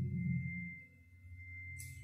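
A faint, steady high-pitched tone holds through a pause in a man's narration, with the last of his voice dying away in the first second.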